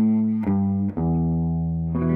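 Les Paul electric guitar playing a traditional blues bass-note riff on the low sixth string: single notes that change about half a second and a second in, the last one held for over a second.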